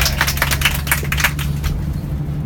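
A small group of people clapping, quick irregular claps that stop just before the end, over the steady low drone of a vehicle's engine.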